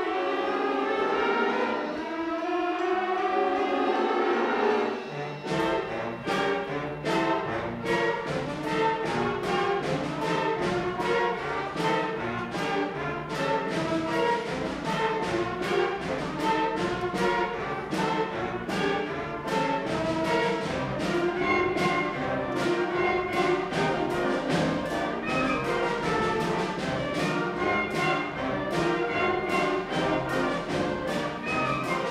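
School concert band of woodwinds and brass playing. The opening is held chords, then about five seconds in the low brass come in and a steady beat carries the piece on.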